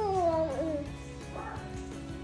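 A baby gives a whiny, meow-like vocal call of under a second that falls in pitch, followed by a fainter short one midway, over background music.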